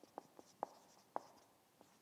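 Marker pen writing on a whiteboard: about five short, faint strokes at irregular intervals as a word is written out.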